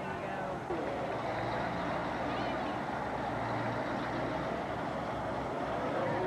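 Truck engines running slowly past as the parade floats and trucks roll by, with a steady low engine hum and people talking in the crowd.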